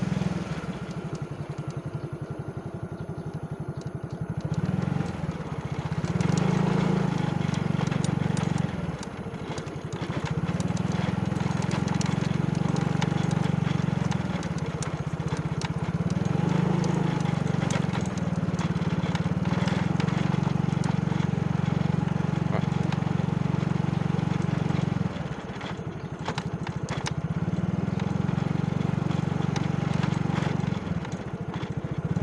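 Small motorcycle engine running while riding, its note easing off and picking up again with the throttle: dipping near the start, about nine seconds in, and again near the end.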